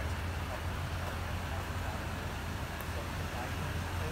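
Toyota Tundra's V8 engine idling steadily with a low, even rumble.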